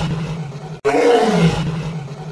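A man's voice imitating a lion's roar: two long roars, each falling in pitch, with a brief break just under a second in.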